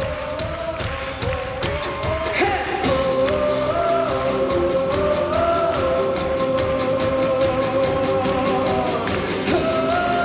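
Live concert music in an arena, heard from the seats: singing over a full band, with long held notes that step up and down in pitch.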